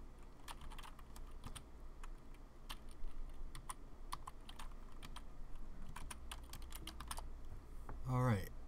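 Typing on a computer keyboard: irregular clicking keystrokes, some in quick runs, over a faint steady low hum.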